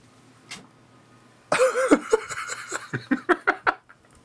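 A man laughing, starting about one and a half seconds in with a drawn-out voiced laugh that breaks into a quick run of short chuckles, then stops just before the end.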